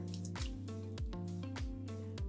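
Soft background music with a steady beat, over dye liquor dripping back into the stockpot from a hank of wet, freshly dyed wool yarn held up on tongs.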